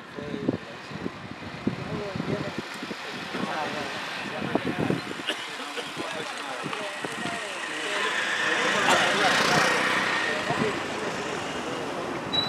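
Several men's voices talking in a group, not clearly made out. A passing road vehicle swells in and fades out, loudest about nine seconds in.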